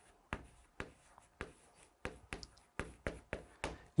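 Chalk writing on a chalkboard: a quick series of about a dozen short taps and scratches as numbers and a character are written.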